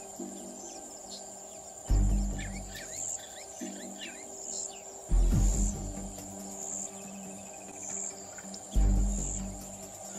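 Background music with three deep drum hits a few seconds apart over sustained low tones, laid over a steady high insect trill and scattered bird chirps.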